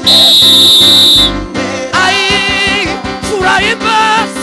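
Live gospel choir music with singing and instrumental backing. It opens with about a second of loud, shrill, steady high tone, then a solo voice holds wavering, vibrato-laden notes over the choir and band.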